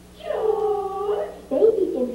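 A person's voice giving a long, drawn-out wordless call with a howl-like quality, then a second call starting about a second and a half in.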